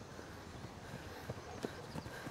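Faint footsteps of two people walking over a dry forest floor, the steps becoming more frequent in the second half.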